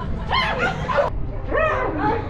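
Women shrieking in fright: about three short, high-pitched screams that rise and fall in pitch.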